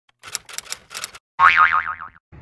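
Logo-intro sound effect: a quick run of clicks, then about a second and a half in a loud cartoon boing that wobbles rapidly up and down in pitch.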